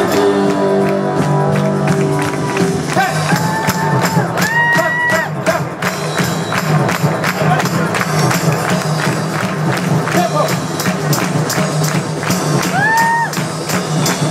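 Turkish dance music played live on violin over an electronic keyboard backing with a steady, fast percussion beat. A couple of times a high note slides up and is held.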